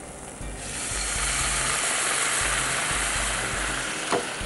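Half a cup of water poured into a hot pan of sautéed vegetables, sizzling steadily from about half a second in, with background music under it.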